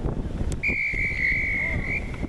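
A referee's whistle blown in one long, steady blast beginning about half a second in, over wind noise on the microphone.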